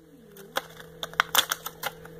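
A run of about six light, sharp clicks and taps, bunched in the second half, from small plastic makeup packaging being handled.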